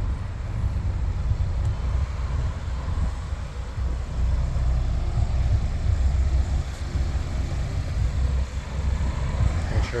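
Wind buffeting a phone's microphone outdoors: a low rumble that rises and falls unevenly.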